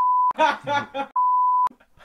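Censor bleep: a steady, single high-pitched beep tone dubbed over speech. It sounds twice, briefly at the start and again for about half a second just after a second in, with laughter between.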